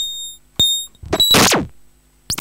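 Live-coded electronic music from TidalCycles: sparse sharp clicks, each with a short high-pitched beep, then about a second in a noisy burst with falling sweeps.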